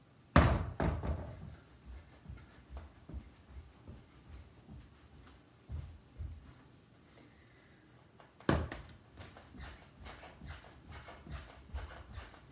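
An underhand-tossed tennis ball lands with a sharp thump and bounces a few times, followed by soft footsteps. A second hard thump comes about eight and a half seconds in, then a quick run of light thuds from jumping jacks.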